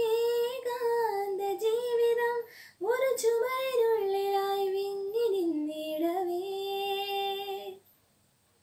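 A woman singing solo and unaccompanied, holding long, steady notes with small turns in pitch; she pauses for breath about three seconds in, and the phrase ends just before the close.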